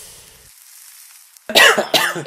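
A faint hiss that fades out within the first half second as a joint's tip catches and smokes, then, about a second and a half in, a loud cough like a smoker's after a drag, cut off by a sharp click.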